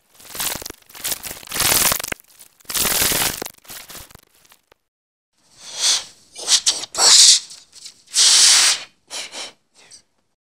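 Heavily distorted, digitally mangled audio: a string of harsh, noisy bursts of varying length that cut in and out abruptly, with a second of dead silence near the middle.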